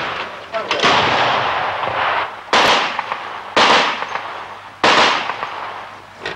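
Heavy weapons firing single shots: four loud reports a second or more apart, each trailing off in a long echo.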